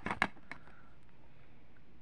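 Short plastic clicks of a DVD being pried off the centre hub of its plastic case, three clicks within the first half second.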